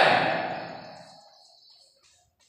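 A man's loud, breathy vocal noise, like a sigh or a cough, that fades away over about a second and a half.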